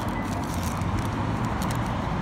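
Steady low background rumble of an outdoor setting, with a few faint clicks over it.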